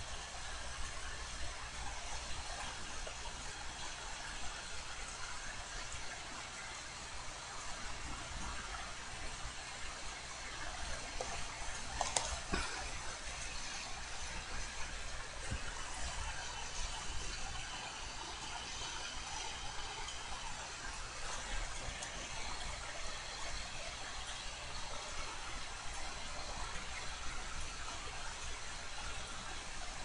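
Steady background hiss with a low hum, the room tone of a desktop recording microphone. A few faint clicks come through, the clearest about twelve seconds in.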